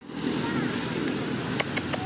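Steady low rumble like a distant motor vehicle engine. Faint high squeaks come about half a second in, and three sharp clicks come near the end.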